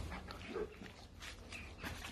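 A dog making faint, brief vocal sounds close by, the clearest a short one about half a second in.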